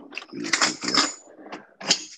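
A utensil scraping and knocking against a stainless-steel stand-mixer bowl with butter in it, in a cluster of scrapes about half a second in and a sharper knock near the end.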